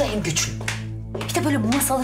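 Dishes and cutlery clinking several times over background music with a steady low tone.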